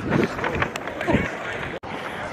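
Indistinct voices over a dense rustle of outdoor bustle. The sound cuts out abruptly for an instant near the end.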